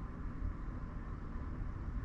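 Steady low background hum and hiss, with no distinct events.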